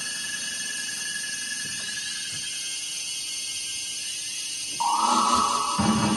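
Experimental electronic performance music made of sustained tones. A high held tone fades away over the first few seconds above a faint low hum, then a louder, lower tone comes in sharply about five seconds in.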